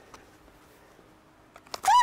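Quiet room tone with a faint click or two, then near the end a person's voice rises in pitch and breaks into laughter.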